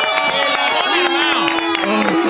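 Radio hosts' voices calling out in long, drawn-out held tones, overlapping one another, with music and crowd cheering beneath.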